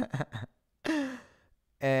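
A man's laughter: a few quick bursts, then after a short pause one breathy falling chuckle about a second in. His voice starts again just before the end with a drawn-out word.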